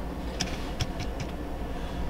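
Chevrolet 5.3 L Vortec V8 idling cold, heard from inside the cab as a steady low rumble, with a few faint clicks.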